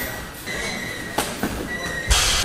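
Stand-up sparring in gloves on gym mats: footwork and two sharp strikes landing a little over a second in, over a thin, steady high-pitched whine that comes and goes.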